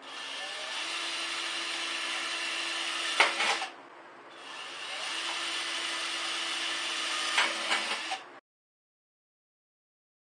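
Cordless drill boring holes through the thin steel wall of a gallon can, in two runs of a few seconds each with a short pause between, each run ending in a sharp click. The drilling is a ring of holes around a circle so the centre can be snapped out for the stove's feed tube. The sound cuts off suddenly.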